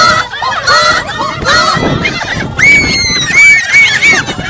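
A group of Maasai women singing a high-voiced chant together, many short calls rising and falling in pitch and overlapping.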